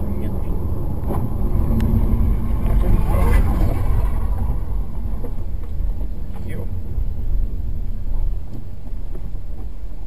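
A car's engine and tyre noise heard inside the cabin as a steady low rumble. It eases off a little near the end as the car brakes hard to a crawl.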